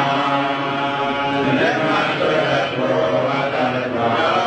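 Islamic religious chanting: a voice intoning a melody in long held notes that shift in pitch.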